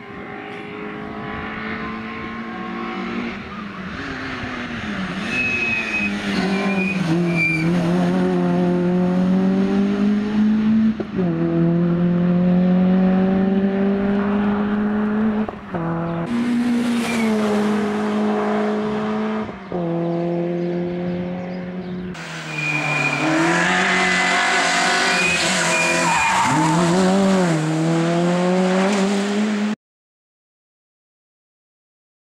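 Citroen C2 rally car engine revving hard under acceleration, its pitch climbing and dropping at each upshift, then falling and rising again as it slows for bends and pulls away. Short high-pitched squeals come in twice, and the sound cuts off abruptly near the end.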